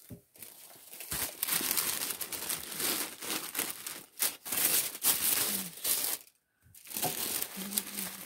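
Tissue paper crinkling and rustling as it is handled and folded over inside a cardboard gift box, in an uneven run of crackles with a short pause about six seconds in.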